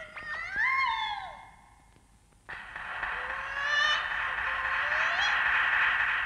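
Electronic cartoon sound effects: sliding, warbling tones rise and fall for about a second and a half. After a short pause a steady hiss cuts in sharply, with rising glides sounding over it.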